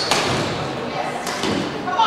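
Rackets striking a shuttlecock in a badminton rally, a sharp hit near the start and another at the end, ringing in a large hall over background voices.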